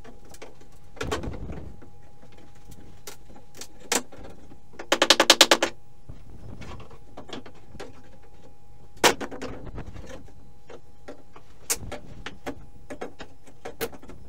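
Old wooden subfloor boards being pried up with a steel crowbar: scattered knocks and clacks of wood and metal, a quick rattling burst about five seconds in, and one loud knock about nine seconds in.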